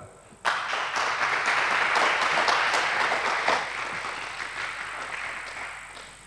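Audience applause, starting about half a second in and slowly dying away.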